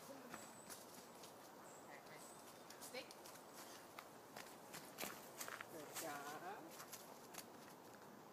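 Faint, irregular footsteps of a person and a dog running on a leaf-covered dirt trail. A brief voice sound comes about six seconds in.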